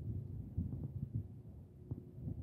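Wind buffeting the microphone: low, irregular rumbling thumps.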